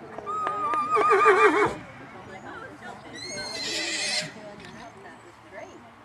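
A horse whinnying twice. The first whinny is long and loud with a quavering pitch, and a shorter, higher-pitched whinny follows about three seconds in.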